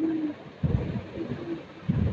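Bumps and rubbing of a handheld phone being moved about, with low thuds twice, about half a second in and near the end. A short low cooing tone sounds right at the start.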